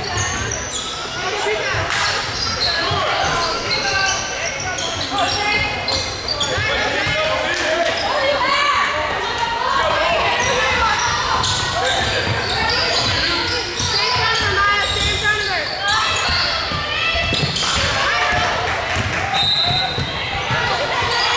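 A basketball bouncing and players running on a hardwood gym floor during a game, with indistinct voices echoing in a large gymnasium.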